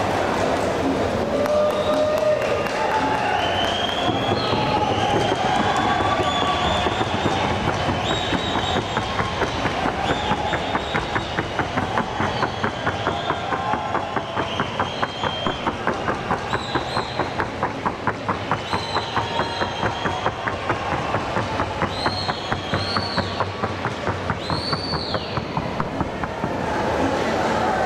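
A horse's hooves striking in a fast, even rhythm of about three beats a second as it trots, with whistles and calls from the crowd over it.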